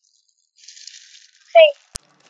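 Faint rustling of clear plastic packaging being handled, then a single sharp click near the end.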